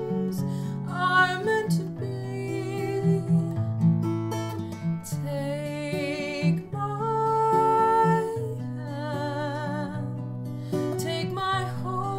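Acoustic guitar played as accompaniment to a woman singing a slow ballad melody, her held notes wavering with vibrato.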